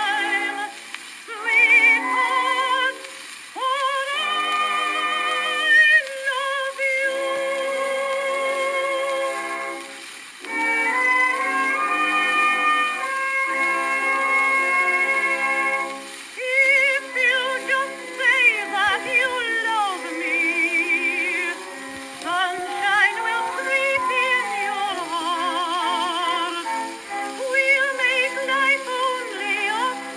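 A contralto sings with wide vibrato over instrumental accompaniment on a 1913 acoustic-era record, with no bass and a thin, narrow-band tone. There are short breaks between phrases, one about a second in and another about ten seconds in.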